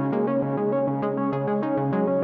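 Analogue modular synthesizer sequence from Behringer System 55 Eurorack modules, with a Moog Mother-32 playing its own sequence synchronised via MIDI: short pitched notes stepping in a steady repeating pattern, about four a second.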